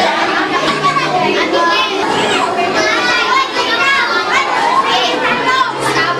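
Many children's voices talking and calling out over one another in a steady, loud hubbub.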